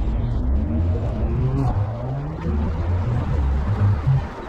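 Street traffic: a car's engine rises steadily in pitch for about two and a half seconds as it accelerates away, over a continuous low rumble.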